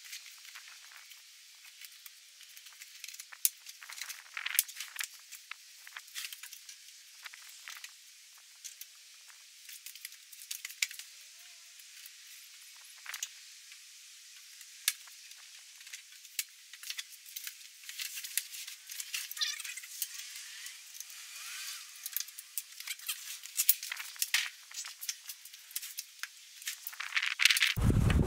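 Scattered clicks, clinks and short rattles of a portable car fridge and its tie-down straps being handled and unstrapped, sounding thin with the bass cut away.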